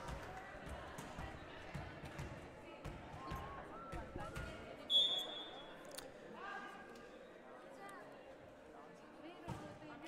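Faint gym sound between volleyball rallies: scattered thumps of a volleyball bounced on the wooden court and distant players' voices. A short, steady, high whistle tone sounds about five seconds in.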